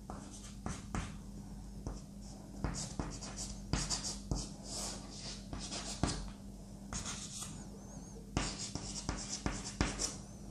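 Chalk scratching and tapping on a chalkboard in short, irregular strokes as a diagram is drawn, over a low steady hum.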